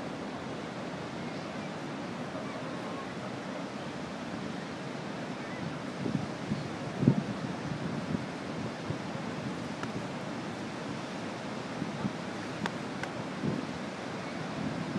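Steady rush of the Niagara River's fast water, with wind buffeting the microphone in gusts, loudest about seven seconds in.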